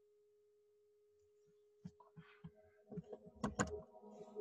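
A faint steady tone, then a few scattered small clicks and knocks from about two seconds in, with a louder pair of clicks shortly before the end.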